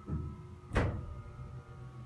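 Faint steady hum of a Dover hydraulic elevator's pump motor, with a soft thump at the start and a single sharp thunk about three-quarters of a second in.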